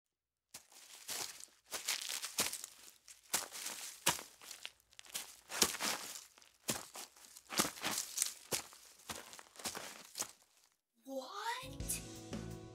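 Dry dead leaves crunching and crackling in a long run of irregular crackles. Near the end a short swooping sound effect leads into music.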